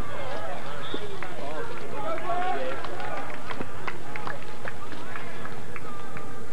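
Several indistinct voices talking and calling out over one another, no words clear, with a few short sharp knocks scattered through.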